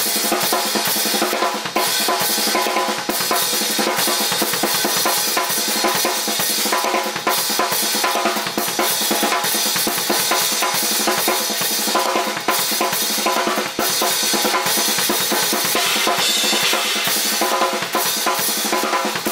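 Acoustic drum kit played without a break: a rhythmic pattern of bass drum, snare and cymbals, an early rhythmic idea for a new song being worked out at the kit.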